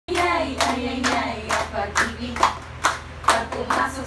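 A group of women clapping their hands together in a steady rhythm, a little over two claps a second, with voices singing along between the claps.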